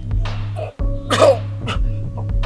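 Background music with a steady low bass note, and over it a man coughing and gasping in short bursts, about two a second.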